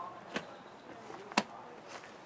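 Two sharp clicks about a second apart, the second louder, from handling a plastic bee-syrup container, with faint handling rustle between.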